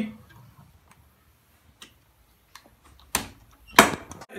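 Solar PV DC isolator switch being turned on by hand: a few faint ticks, then two sharp clicks about half a second apart near the end.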